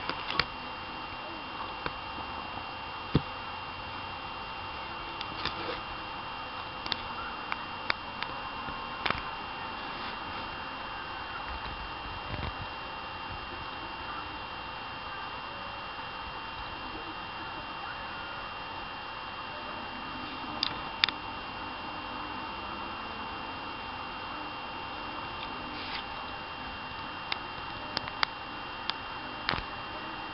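Steady background hiss with faint high whines, broken by a dozen or so light clicks and taps as hands handle the phone and camera up close.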